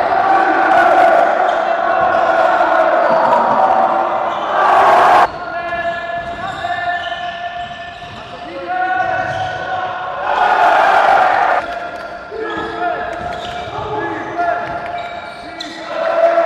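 Basketball game sound in an echoing sports hall: a ball bouncing on the court and players' voices calling out. The sound cuts off suddenly about five seconds in as the next play begins.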